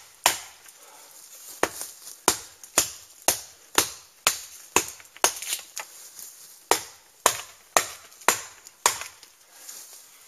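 Carbon V steel Cold Steel Trailmaster knife chopping into the trunk of a dead quaking aspen: about fifteen sharp strikes, roughly two a second, with a short pause about a second in.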